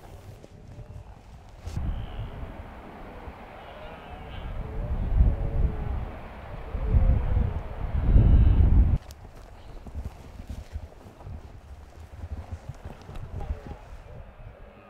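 Wind rumbling on the microphone with the rustle and scuffing of bodies and clothing moving through bracken and heather on a hillside. It swells to its loudest about eight seconds in and drops away suddenly at about nine seconds.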